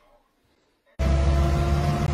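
Near silence, then about a second in a sudden cut to a vehicle engine running steadily, heard from inside the cab while driving.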